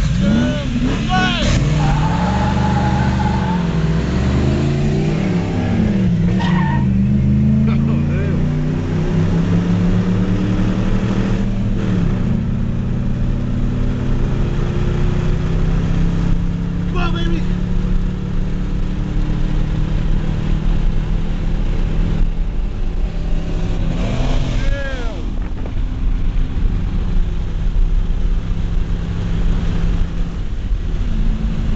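V8 car engine under hard acceleration, heard from inside the cabin. Its revs climb and drop through several gear changes over the first dozen seconds, then settle into a steady high-speed run.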